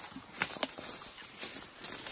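Footsteps through dry leaf litter and undergrowth: a handful of separate sharp crackles and snaps as someone pushes through the brush.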